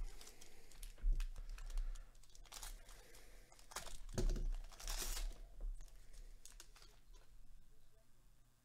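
A plastic trading-card pack wrapper is torn open and crinkled in several rustling bursts, the loudest about four to five seconds in. Light clicks of the cards being handled follow near the end.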